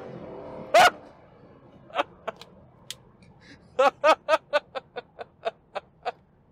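A man laughing inside a car: one loud whoop about a second in, then a run of short, rhythmic bursts of laughter, over a faint low rumble of engine and road noise in the cabin.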